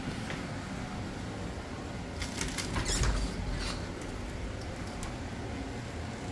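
Louvered bifold pantry doors being pulled open: a cluster of light clicks and rattles about two seconds in, with a low bump about three seconds in.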